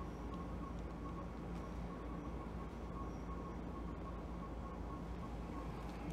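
Steady low hum of room tone with a faint, thin high tone above it; no click or crack from the neck handling is heard.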